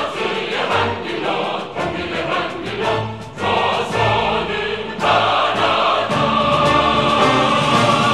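Choir singing a Korean song with instrumental accompaniment.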